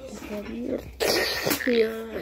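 Voices talking close to the microphone, cut by a sudden loud burst of noise about a second in that lasts about half a second and ends in a click.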